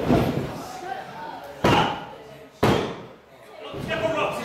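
Two sharp hand slaps on the canvas of a wrestling ring, about a second apart: a referee counting a pinfall. Voices are heard around them.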